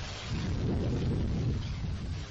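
Low, steady rumble of a Falcon 1 rocket's first-stage Merlin engine climbing away just after liftoff.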